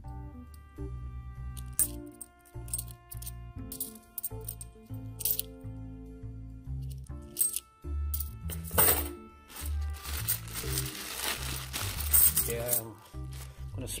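Background music with a steady bass line, over clinks of 50p coins being picked from a handful and set down on a towel. Near the end comes a longer run of coins jingling together.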